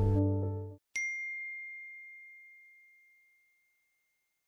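A held music chord with a bass note ends under a second in. Then a single bright ding strikes once and rings on one high tone, fading away over about two seconds.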